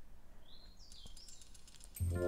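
Quiet room tone with a few faint high chirps, one rising and one falling, about half a second in, and a faint tap near the middle.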